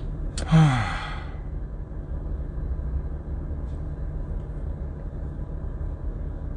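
A man's loud, breathy sigh, falling in pitch, about half a second in; after it only a steady low rumble in the car's cabin.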